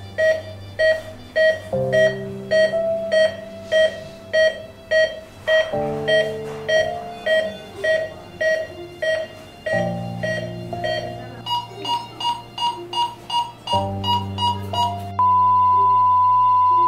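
Patient monitor beeping steadily, about one and a half times a second, over soft sustained music. About three-quarters through, the beeps turn higher and quicker, about three a second. Near the end they merge into one continuous tone, the flatline that signals the heart has stopped.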